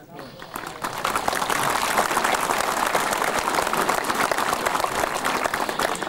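Crowd applauding, building up over about the first second and then holding steady.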